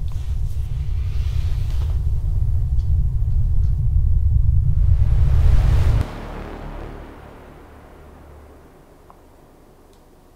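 Deep rumble from an edited outro sound effect that builds in loudness, with a rising hiss swelling over it. It cuts off sharply about six seconds in as the logo card appears, leaving a faint low tail that fades away.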